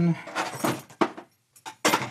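Metal hand tools clinking and rattling as a hand rummages through a crowded workbench drawer: a run of clatter for about a second, a short pause, then more clatter near the end.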